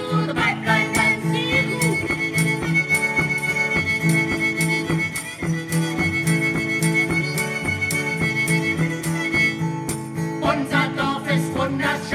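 Country-style dance tune on fiddle and acoustic guitar with a steady beat; a long high note is held through most of it.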